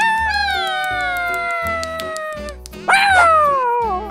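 A cartoon character's wordless vocal cry: one long wail sliding slowly down in pitch for over two seconds, then a second, shorter cry that jumps up and falls away, over background music with a steady beat.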